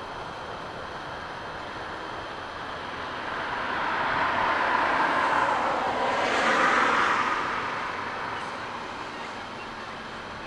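A vehicle passing by: a rushing noise that swells over a few seconds, is loudest around the middle, then fades away.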